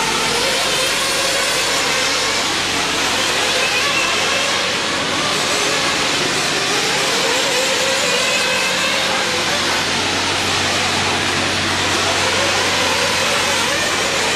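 A pack of 1/8-scale nitro RC truggies racing together: many small glow-fuel engines whining and revving at once in one continuous dense din, with single engines rising and falling in pitch as they accelerate and back off.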